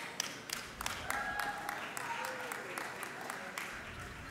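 Scattered hand claps from a congregation, irregular and several a second, over faint voices in the hall.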